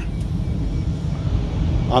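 Low, uneven rumble of wind buffeting the microphone, with no engine note in it.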